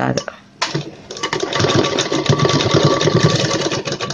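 Sewing machine running in one continuous stitching burst, starting about half a second in, a rapid even rattle of the needle with a faint motor whine under it. It is running a rough securing stitch over a seam joint so the joint won't pull apart.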